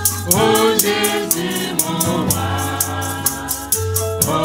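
French gospel worship song sung into a microphone over a steady low accompaniment, with a rattle keeping a fast even beat, about four strokes a second.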